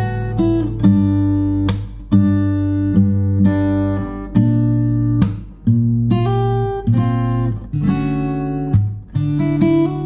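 Cort GA-PF Bevel acoustic guitar played solo fingerstyle in standard tuning: a slow picked chord progression at about 68 beats a minute, moving from Am through G5 and Gm/B♭ to Dmaj7, each chord struck with its bass note and left to ring under short picked melody notes.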